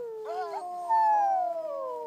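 Several huskies howling together in chorus: long, overlapping howls that slide slowly down in pitch, with short rising calls joining near the start and the loudest howl beginning about a second in.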